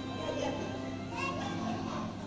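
Indistinct chatter of children and other visitors, with music playing in the background and a steady low hum.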